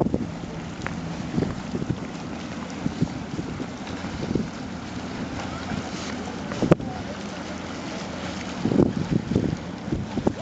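Steady low rumble of the thousand-foot Great Lakes freighter Walter J. McCarthy Jr. passing close by at slow speed, with wind buffeting the microphone. A single sharp click comes about two-thirds of the way through.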